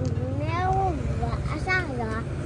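A cat meowing: one long meow of about a second, rising and then falling in pitch, over a steady low hum.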